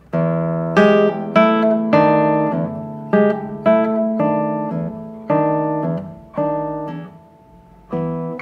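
Nylon-string classical guitar played slowly: plucked two-note chords, a moving bass line under an upper note, about two a second, each left to ring. The last chord fades out about a second before the end.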